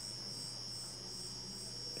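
An insect's high-pitched trill: one steady, unbroken note.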